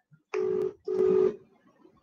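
Two short electronic beeps, each a steady buzzy tone about a third of a second long, half a second apart, the second louder.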